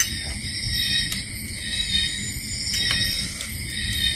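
Night insects chirring steadily in several high-pitched bands, with a low rumble underneath and a few faint clicks.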